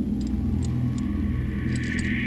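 A low, steady rumble on a film soundtrack, with a higher hiss starting to swell near the end.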